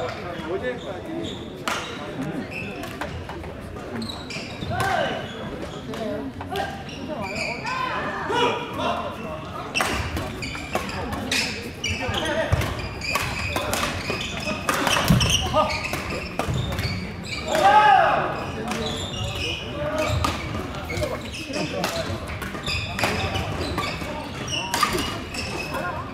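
Badminton play in a sports hall: the sharp cracks of rackets hitting a shuttlecock come irregularly throughout, over the echoing chatter of many voices across the hall.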